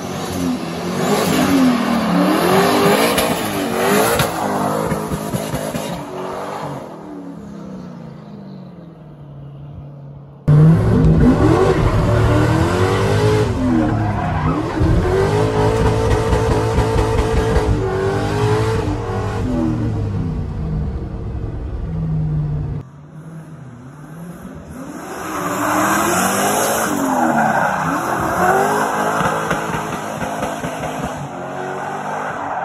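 A turbocharged Chevrolet Silverado drift truck's engine revving up and down hard through slides, with tyres squealing. About ten seconds in the sound turns suddenly louder and heavier, as heard from inside the cab. A little before the end it switches back to the more distant sound outside the truck.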